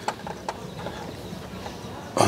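Green plastic toy horse with a doll rider making a faint clip-clop of light clicks.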